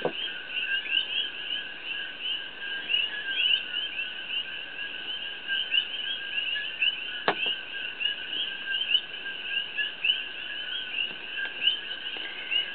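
A steady chorus of rapid, high chirps, many a second, over a constant higher hum, with a single sharp click about seven seconds in.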